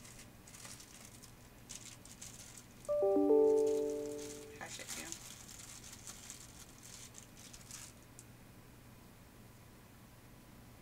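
Paper and lace rustling and crinkling as craft pieces are handled on a tabletop. About three seconds in, a short chime of several clear notes sounds, the notes coming in one after another. It fades over about a second and a half, then cuts off suddenly.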